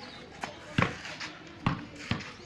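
A basketball being dribbled on a concrete street, with a few sharp bounces, the loudest about a second in.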